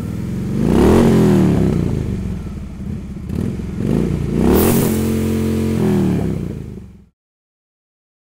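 Motorcycle engine revved twice, the pitch climbing and dropping back with each rev. It cuts off suddenly about seven seconds in.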